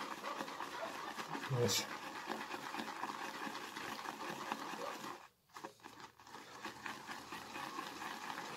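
Damp shaving brush swirled briskly in a wooden bowl, whipping soft shaving soap smeared on the bowl's walls into lather with only the water held in the brush: a steady wet, scratchy swishing of bristles against the bowl. It drops away briefly a little past halfway, then resumes.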